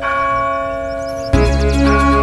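A church bell tolls once and its ring hangs and slowly fades. About a second and a half in, film score music with a deep bass comes in over it.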